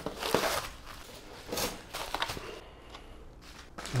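Bubble-wrap and cardboard packaging rustling and crinkling as an item is pulled from its box. It comes in a few short bursts with light clicks and goes quieter over the last second or so.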